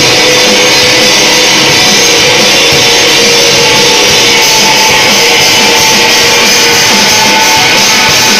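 A rock band playing at full volume: distorted electric guitar, bass guitar and drum kit in one dense, steady sound, with long held guitar notes.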